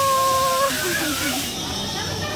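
A child's long held shout ends just under a second in, over a steady hiss of air that drops away about a second and a half in; a few short squeals follow.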